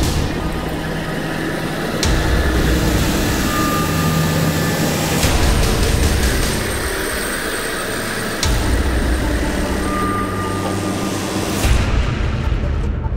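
Engines of heavy dirt-track preparation machines (a motor grader, a packer roller and a water truck) running steadily. The sound changes abruptly every three seconds or so, from one machine to the next.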